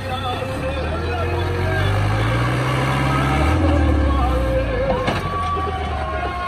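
New Holland Dabung 85 tractor's diesel engine working hard while pushing sand with its front blade. Its revs climb steadily for a couple of seconds, then drop sharply about three and a half seconds in. Music with singing plays behind it.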